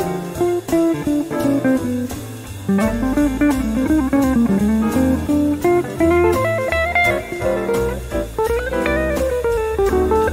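An electric guitar plays a single-note jazz solo with bent and sliding notes. It runs over a backing track with a bass line, moving through Dm7, F major and D7 chords.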